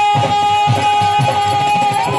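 Telugu devotional bhajan: a male lead singer holds one long note, accompanied by an electronic keyboard and a drum beat of about two strokes a second.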